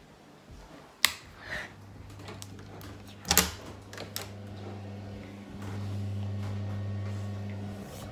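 A door being handled and opened: a sharp click about a second in, then a louder click with a low thud a few seconds later. After that a low steady electrical hum sets in and gets louder past the halfway point.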